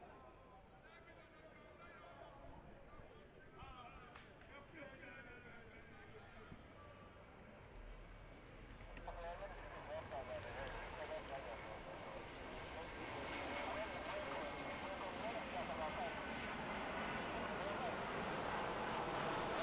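Several voices talking at once in a football team huddle on an outdoor pitch, under a steady background noise that grows louder from about halfway through.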